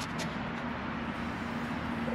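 Steady background hum with a faint held low tone; no distinct event.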